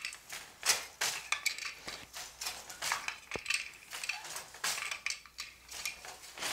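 Wooden floor loom being woven: a run of wooden knocks and clacks as the beater is pulled against the cloth, the shed is changed and a boat shuttle is thrown across, going in an uneven back-and-forth rhythm.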